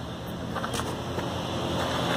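Chevrolet N300 van's 1.2-litre engine idling, a steady low hum.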